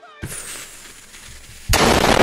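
A rushing hiss with a faint high whistle falling in pitch, then, near the end, a sudden loud blast of noise lasting about half a second.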